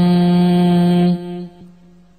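A single voice chanting a Pali Buddhist protective verse, holding the last syllable of a line on one long steady note. The note fades away about a second in, leaving a short pause before the next line.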